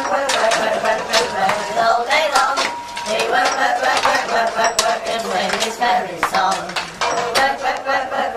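Sharp metallic clinks and knocks, irregular, a couple each second, over a group of voices singing.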